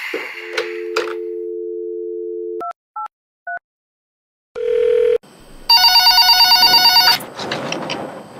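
Telephone call being placed: a handset is lifted, a steady dial tone plays for about two seconds, three keypad beeps are dialed, a short tone follows, then a desk telephone rings with a loud rapid electronic trill for about a second and a half.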